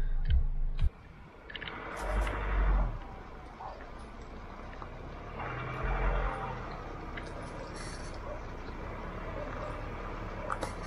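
Road and wind noise from the moving Ford Raptor pickup, picked up by a camera outside the truck. Louder rushes come about two seconds in and again around six seconds. A louder sound in the first second stops abruptly as the picture cuts.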